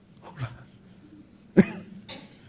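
A man coughing once, short and sharp, near the end, after a faint throat sound about half a second in.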